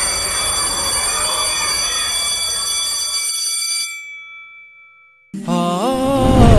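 A shimmering chime-like sound effect, with many steady high ringing tones over a noisy swell, cuts off about four seconds in, leaving a few tones that ring on and fade. After a short gap, music with a singing voice starts just after five seconds.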